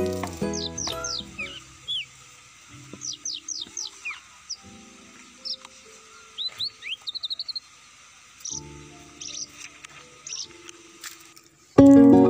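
Birds chirping: short, high, downward-sliding whistled notes repeated in scattered groups, with a quick trill about seven seconds in. A music track fades out at the start, and plucked-string music starts loudly just before the end.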